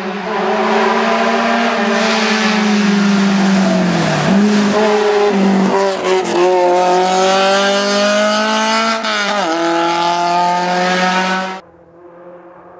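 Rally car engine driven hard on a stage at full throttle. The note drops as the car slows about four seconds in, picks up again, climbs steadily through a gear and falls at an upshift just after nine seconds. It cuts off suddenly near the end.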